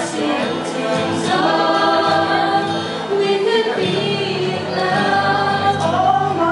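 A man and a woman singing a pop love-song duet into microphones over a sound system, holding long sustained notes.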